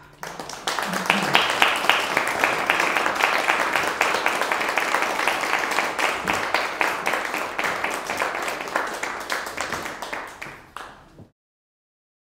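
Audience applauding at the end of a live tenor-and-guitar performance, strong at once and fading slightly, then cut off abruptly about eleven seconds in.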